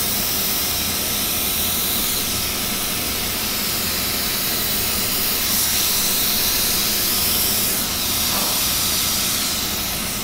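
Compressed-air spray gun hissing steadily as it sprays activator over hydrographic film floating on the water of a dip tank.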